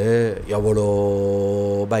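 A man's voice drawing out one long vowel at a level pitch for well over a second, chant-like rather than spoken, after a short spoken syllable.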